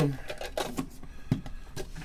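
Faint scattered clicks and light rustling of trading cards and plastic card holders being handled on a table, with one soft knock a little over a second in.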